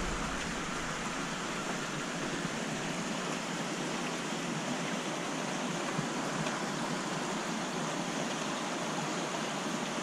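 Steady, even rushing noise of water circulating in a large aquarium tank, with a faint click about six seconds in.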